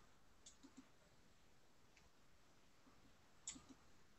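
Near silence with a few faint, short clicks: three in quick succession about half a second in, one about two seconds in, and two more near the end.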